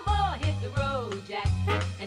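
A live band playing a swing-style number, with a saxophone and vocal melody over a bass line and drums.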